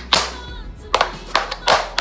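Metal taps on tap shoes striking a hard floor in a tap-dance traveling step: about six crisp, separate taps in an uneven rhythm, two close together at the start and the rest spaced through the second half.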